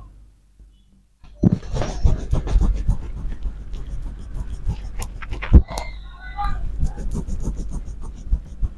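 Hands massaging damp hair and scalp close to the microphone: dense rubbing and crackling with irregular soft thumps, starting suddenly about a second and a half in.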